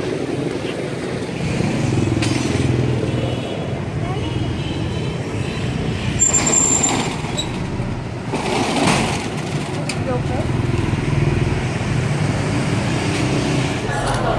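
City street traffic: engines of passing vehicles and motorbikes running steadily, with a brief high squeal about six seconds in and a rush of a passing vehicle a couple of seconds later.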